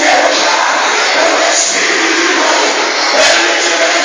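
Loud church worship music mixed with the voices of a congregation, dense and continuous, with a brief low knock about three seconds in.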